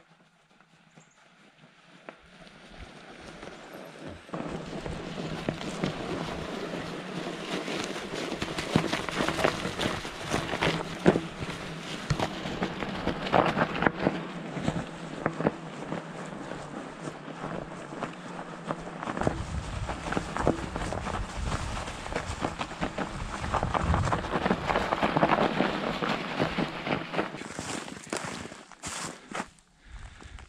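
An electric fat-tire bike's tyres crunching over packed snow, with dense crackling that grows louder over the first few seconds as the bike comes closer. A low rumble joins in about two-thirds of the way through.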